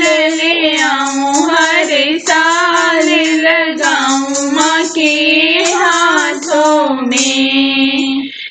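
A woman singing a Bhojpuri devi geet, a Navratri devotional song to the goddess, in a high voice with long held and bending notes over a steady rhythmic accompaniment.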